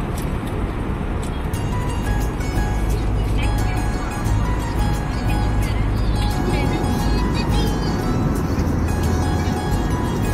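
Steady low drone of a jet airliner cabin in flight, engines and airflow, with faint music and voices over it.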